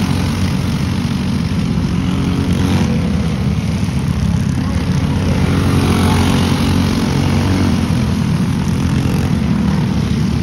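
Several racing go-kart engines running at speed on track, a steady buzzing drone.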